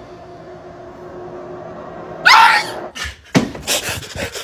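Quiet room tone, then a sudden loud, high yelp that bends upward in pitch a little over halfway through, followed by a run of sharp knocks and clatters.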